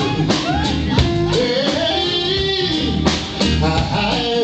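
Live neo-soul band playing, led by electric guitar over bass, keyboard and drum kit, with a melody line that bends in pitch.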